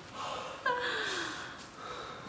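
A person's sharp, breathy gasp, then a short vocal 'ooh' about two-thirds of a second in whose pitch falls steadily: a startled reaction to the icy frozen T-shirt.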